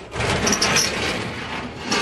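Steel garden shed sliding door being slid along its metal track: a continuous scraping noise, with a knock near the end.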